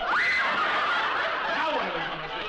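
Studio audience laughing loudly, a sustained wave of laughter from many people that eases slightly near the end.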